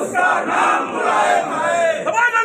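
A crowd of men loudly shouting political slogans, many voices overlapping without a break.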